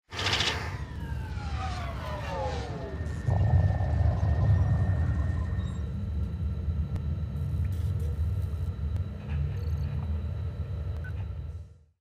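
Outro sound effect: several tones glide downward together over the first three seconds, then a deep steady rumble takes over and holds until it cuts off at the end.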